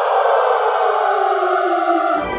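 A sustained, dense droning sound effect that slowly slides down in pitch, accompanying an animated title reveal.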